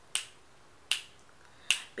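Finger snaps keeping time for unaccompanied singing: three sharp, short snaps at an even beat, about three-quarters of a second apart.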